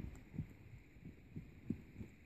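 Hoofbeats of a ridden paint horse on soft arena dirt: faint, muffled low thuds at an uneven beat.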